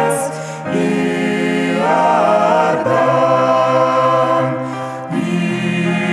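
A small mixed ensemble of men's and women's voices singing a Russian hymn in several-part harmony into microphones. The held chords change every couple of seconds.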